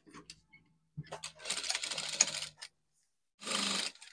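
Industrial single-needle lockstitch sewing machine stitching a collar onto a dress neckline in short runs: a few clicks, a run of about a second and a half, then a shorter run near the end.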